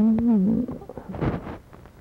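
A voice making a drawn-out wordless hesitation sound, held at one pitch for under a second, followed by a short noisy sound about a second in.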